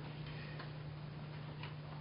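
Quiet room tone through the podium microphone: a steady low electrical hum with a faint hiss, and two or three faint ticks.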